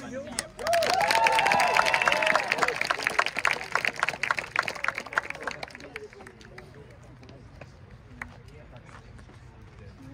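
Spectators clapping and cheering, with whoops, as a runner's placing is announced; it lasts about five seconds, then dies away to a low background murmur.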